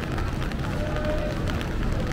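City street noise in the rain: a steady low rumble of traffic, with faint scattered ticks and a brief faint tone about a second in.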